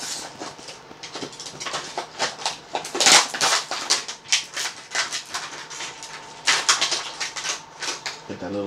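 Plastic packaging of a carded action figure crinkling and crackling as it is torn open and handled, a dense run of rustles with louder bursts about three seconds in and again about six and a half seconds in.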